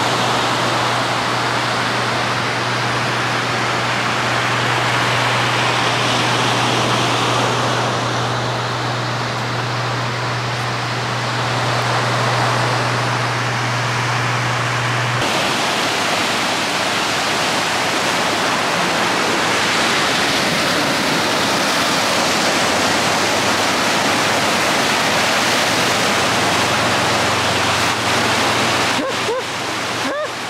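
Ocean surf breaking and washing up a sandy beach, a loud steady rushing noise; its character shifts slightly about halfway through.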